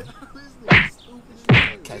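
Two sharp, loud smacks about a second apart, each dying away quickly.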